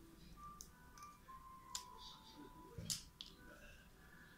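Faint handling sounds of an adhesive metal plate having its backing peeled off and being pressed on: a few sharp clicks and crackles, the loudest about three seconds in, over faint music.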